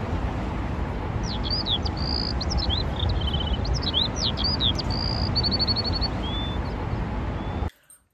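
Small birds chirping in quick short calls, sliding notes and a brief trill, over a steady low rumble of city traffic; the sound cuts off suddenly near the end.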